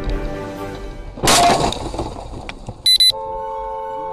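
A car's windshield struck by an object and cracking: a sudden loud crash about a second and a half in, with glass crackling briefly after it. A short high electronic beep follows near the end, over background music.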